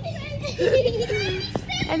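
Children playing, their voices calling and chattering over a steady low background rumble, with a single sharp click about one and a half seconds in.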